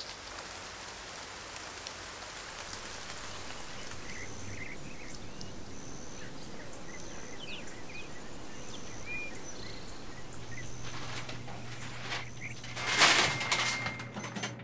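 Steady rain falling, giving way to outdoor ambience with birds chirping. A low steady hum comes in near the end, followed by a brief loud clatter.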